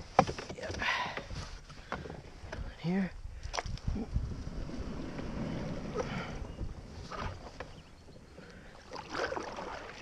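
Old Town Vapor 10 sit-in kayak launching off a muddy bank and being paddled away: scattered knocks of the paddle against the hull, with the splash and wash of paddle strokes in the water.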